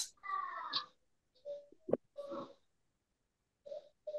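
Faint, broken snatches of voice-like sound over a video-call connection, cutting in and out, with one sharp click about two seconds in.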